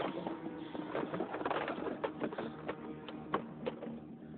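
Irregular clicks and knocks of tools and small objects being handled on a wooden workbench, the sharpest about three seconds in.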